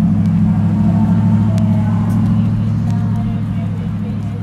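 A steady, loud low engine hum close by, with faint voices over it.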